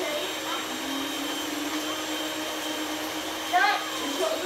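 Electric mixer motor running steadily in a kitchen, an even whirring hum.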